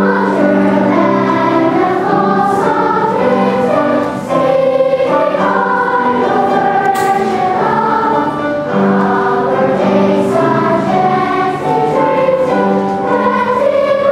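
A choir of young schoolgirls singing the school song, moving through long held notes.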